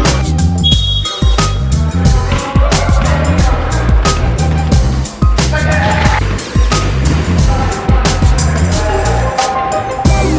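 Background music with a heavy, repeating bass beat and steady drums.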